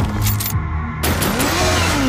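Action-movie trailer soundtrack: a loud, steady low drone whose high end cuts out briefly about half a second in, then a sound effect falling steadily in pitch near the end.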